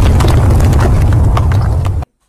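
Earthquake and ground-collapse sound effect: a loud, deep rumble packed with crackling, crumbling debris as the ground caves in. It cuts off suddenly at the end.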